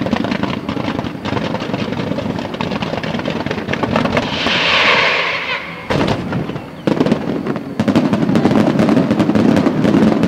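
Aerial fireworks bursting in a rapid, dense run of bangs and crackles. A hissing rush swells about four to five seconds in, sharp reports hit near six and seven seconds, and a denser barrage follows toward the end.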